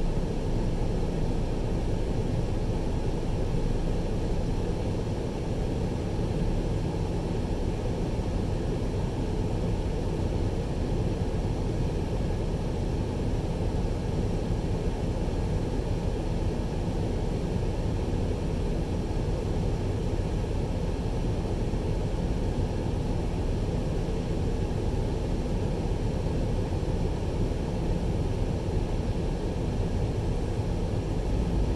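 A truck's engine idling, heard from inside the cab as a steady low rumble while the truck stands still.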